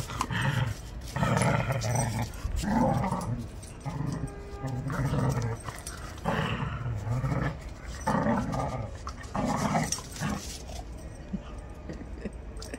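Dogs growling in play while tugging a toy between them: a string of short growls about one a second, dying down near the end.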